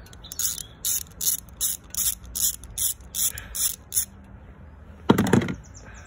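Ratchet wrench with a 10mm socket clicking steadily, about two and a half clicks a second, as it undoes an ignition coil pack bolt. A louder, brief rattle follows about five seconds in.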